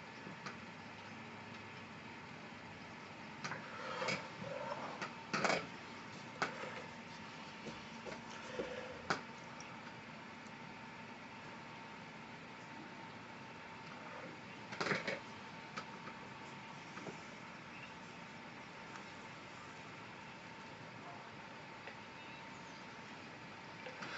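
Quiet room tone with a faint steady hum. A few brief scrapes and taps from a wide flat brush dabbing and stroking watercolour paper come in a cluster a few seconds in, with single ones about halfway through.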